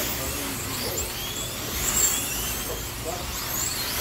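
Slot cars' small electric motors whining as they race around the track, several overlapping whines rising and falling in pitch as cars pass and brake into the turns.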